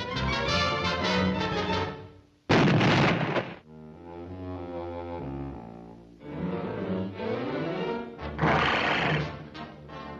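Orchestral cartoon score with brass and low strings. It cuts out just before a dynamite explosion about two and a half seconds in, the loudest sound, lasting about a second. The music then resumes, with a second, shorter burst of noise near the end.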